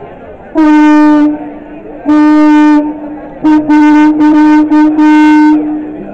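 Loud horn-like blasts held on one unchanging pitch: two long blasts about a second and a half apart, then a quick run of four short blasts ending in a longer one, over the murmur of a crowd.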